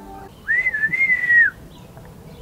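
A man whistling one call, about a second long: a single note with a small dip in the middle that falls away at the end.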